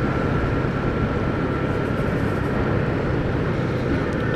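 Motorcycle engine running steadily at an even cruise of about 50 km/h, with road noise, heard from a helmet camera; a continuous low drone with a faint steady high whistle over it.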